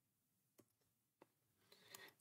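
Near silence: room tone, with two faint clicks.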